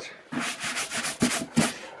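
A gloved hand rubbing dust off a scooter's plastic front panel in a quick run of strokes.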